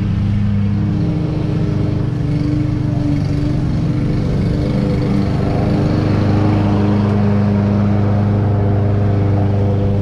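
Walk-behind gas lawn mower engine running steadily. It grows louder and brighter from about halfway through as the mower passes close by.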